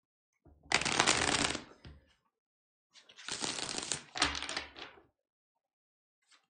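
Tarot cards being shuffled by hand in two bursts, a short one about a second in and a longer one about three seconds in.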